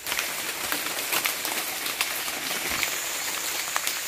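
Light rain pattering on leaves and leaf litter: a steady fine hiss scattered with faint small ticks.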